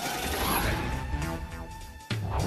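Trailer soundtrack: music with mechanical sound effects and a slowly rising tone that levels off about a second in, easing a little toward the end.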